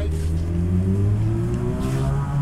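A motor vehicle's engine running close by, its pitch rising slowly as it speeds up.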